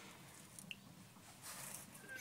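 Near silence: faint room tone, with one tiny click less than a second in.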